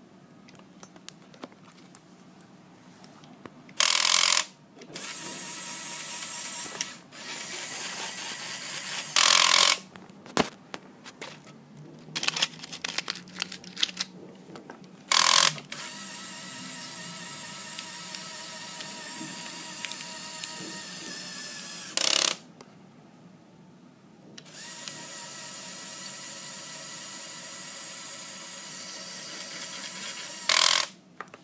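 Lego electric motors running in several stretches of a few seconds each, a steady whine that drives a toy garbage truck's compactor through foil-wrapped 'cans'. Short, loud noisy bursts fall between the runs.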